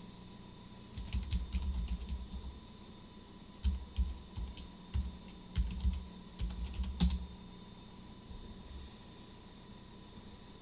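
Keystrokes on a computer keyboard, typed in short bursts with pauses between them, ending in one sharper keystroke about seven seconds in.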